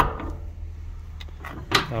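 A sharp metallic click from the lever latch of an outdoor wood furnace's steel door, then faint handling noise as the door is swung open.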